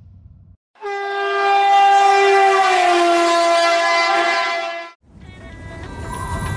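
A single long, horn-like blown note lasting about four seconds, stepping down slightly in pitch midway and then cutting off, with music coming in near the end.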